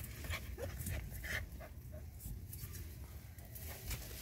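Hunting dog panting, faint and irregular, with its head down in an armadillo burrow, along with a few soft short sounds.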